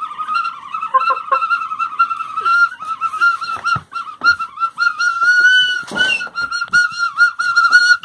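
Small bamboo flute played on one high, shrill note, tongued in quick repeated pulses with small dips in pitch. There is a brief rustling burst about six seconds in.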